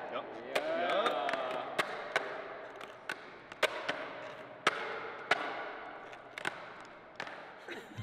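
Sharp clacks of skateboard wheels setting back down on a concrete floor, about two a second, as the board is stepped along in a freestyle penguin walk, pivoting alternately on nose and tail.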